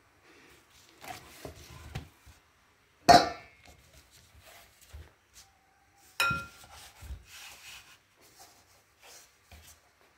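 Hands working and rubbing soft roti dough, with kitchen utensils knocked down on the work surface: a sharp knock about three seconds in, the loudest sound, and a second knock with a short ringing clink about six seconds in.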